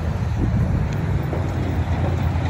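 Road traffic passing through an intersection: a steady low rumble of engines and tyres, with wind noise on the microphone.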